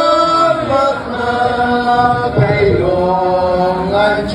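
Group of voices chanting a traditional dance song together in long held notes, sliding from one pitch to the next.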